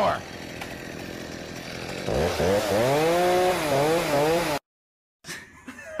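Gas chainsaw engine revving, its pitch rising and falling several times over about two and a half seconds after a steady hiss. It stops abruptly at an edit.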